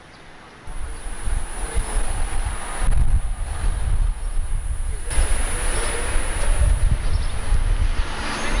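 Outdoor street sound: a loud, uneven low rumble with noise above it that starts abruptly about a second in and changes suddenly twice, near three and five seconds.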